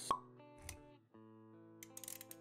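Intro-animation music sting: a sharp pop with a quick falling pitch just after the start, a short low thud a little later, then held musical notes come back in with a few quick clicks near the end.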